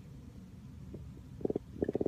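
Faint gurgling from a newborn baby held close to the microphone: a low rumble, then about one and a half seconds in a quick, irregular run of short low gurgles.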